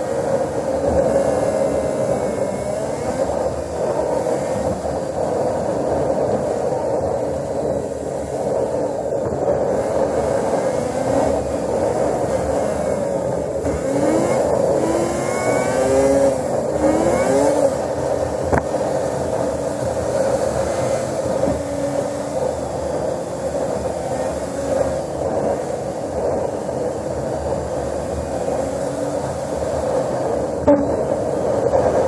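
A vehicle's engine and road noise, steady throughout, with the engine's pitch rising and falling several times as it speeds up and slows.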